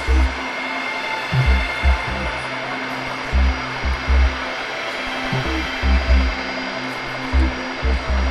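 Boeing 747 Shuttle Carrier Aircraft's four jet engines running at taxi power: a steady whining hiss with several high, steady tones, broken by irregular low thumps.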